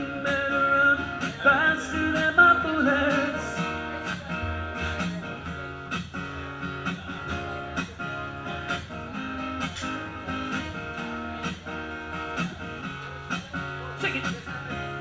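Guitar strummed in a steady rhythm during an instrumental break in a song. A wordless sung line wavers over it in the first few seconds, then drops out.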